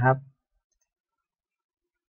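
A man's voice finishing a sentence with the Thai polite particle "na khrap", cut off in the first third of a second, then near silence.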